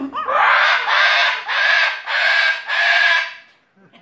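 Cockatoo screeching: about five loud, harsh screeches in quick succession, each about half a second long, then it stops.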